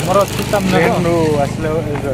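A man's voice talking over a steady low engine-like hum.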